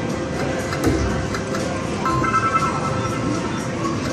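King Midas video slot machine playing its bonus-round music and spin sounds while the free-spin reels turn and stop, with a short run of chimes about two seconds in.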